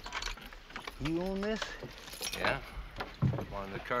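Horse-drawn wagon on a dirt track: harness fittings jingling and clinking and the wagon rattling as the team walks. A short rising voice call comes about a second in.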